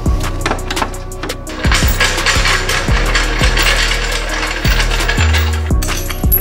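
Background music with a heavy bass line and a steady beat.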